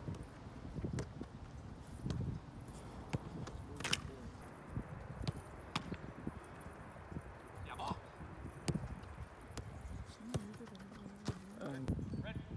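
Soccer balls being struck and stopped in a goalkeeper drill: several sharp thumps at uneven intervals.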